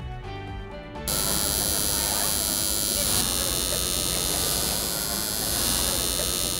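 A brief musical station sting, then from about a second in a tattoo machine buzzing steadily as its needle works ink into skin.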